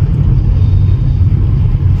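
Steady low rumble of a car moving slowly, heard from inside the cabin.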